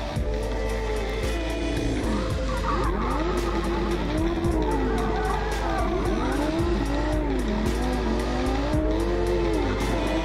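Drift Lamborghini Huracan's V10 engine revving up and down repeatedly as the car slides through a drift, its pitch rising and falling about once a second, with tyre squeal.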